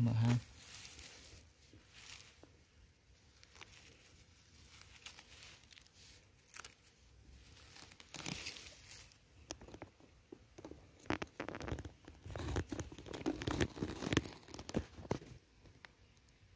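Grass and dry leaves rustling and crackling close to the microphone, growing busier past the middle and loudest a few seconds before the end, as grass is handled at a burrow in sandy ground.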